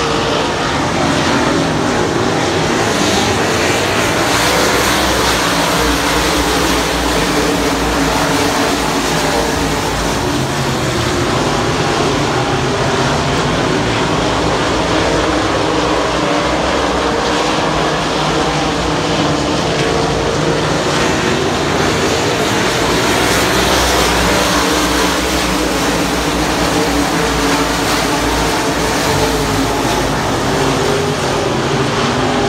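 Many dirt-track race car engines running together as the field circles the oval, loud and steady.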